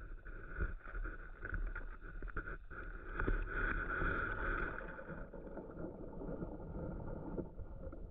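Muffled underwater ambience picked up by a submerged camera in a shallow weedy pond: a low rumble of water movement with scattered faint knocks, swelling a few seconds in and easing toward the end.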